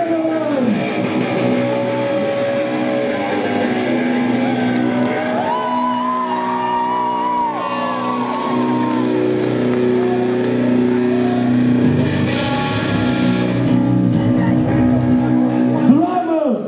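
Electric guitars sounding through stage amplifiers during a band soundcheck: sustained notes and chords, with a run of bending notes partway through, and voices over it.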